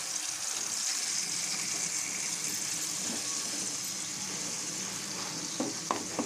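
Ground onion paste sizzling steadily in hot oil in a metal pan as it is scraped in from the mixer jar. A spoon starts stirring with a few light scrapes near the end.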